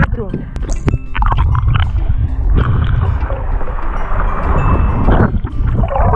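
Sea water rushing and gurgling around the camera as a swimmer dives under, a steady churn of water noise from about a second in until just after five seconds. Background music runs underneath.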